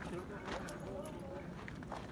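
Several people talking indistinctly, with a few sharp crunching footsteps on loose volcanic gravel.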